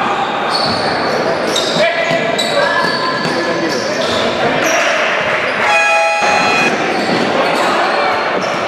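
Live sound of an indoor basketball game in a large, echoing gym: voices calling out, sneakers squeaking and the ball bouncing on the court. A single tone sounds for about a second around six seconds in.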